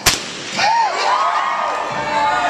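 A large rubber balloon bursting with one sharp, loud bang right at the start, followed by a crowd's voices and cries.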